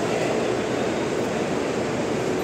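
Steady outdoor urban background noise: a continuous, even rumble and hiss with no distinct events.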